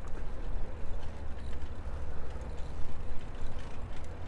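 Wind rumble on a chest-worn lavalier microphone with a furry windscreen while a bicycle is ridden: a low, buffeting rumble that rises and falls, with a thin hiss above it.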